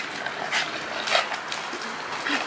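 Dog giving a few short whimpers and yips, excited and waiting for its ball to be thrown.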